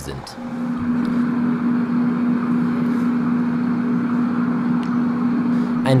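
A tram standing at a stop, giving a steady low hum of unchanging pitch over a haze of street noise.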